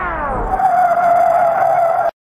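A DJ mix's closing sound effect: a loud, steady, held electronic tone, with falling pitch sweeps over it in about the first half second, cut off abruptly at the very end.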